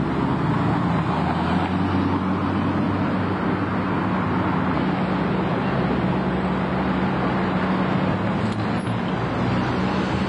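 Double-decker bus's diesel engine running steadily as the bus drives slowly along the street, over general traffic noise.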